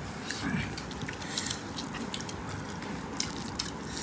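Eating rice and meat curry by hand: a string of small, soft wet clicks and squelches from fingers working the sticky rice and curry, and from eating it.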